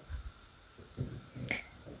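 A few faint, short clicks and taps of a knife and fingers working pieces of fish on a wooden cutting board.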